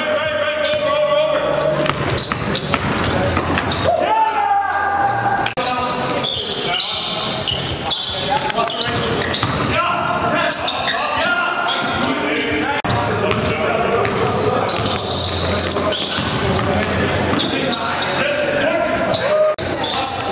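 Basketball dribbled and bounced on a gym floor, with players' voices in an echoing gym.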